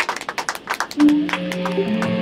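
A quick run of sharp clicks or taps, then about a second in several amplified electric guitar notes are struck and ring on steadily.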